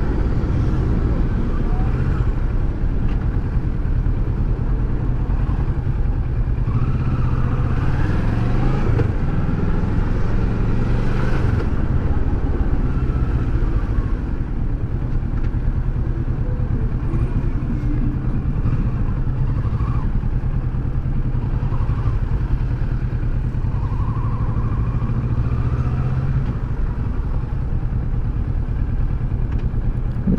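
Kawasaki Versys 650's parallel-twin engine running at low road speed. Its note rises and falls with the throttle, most plainly about a third of the way in and again near the end.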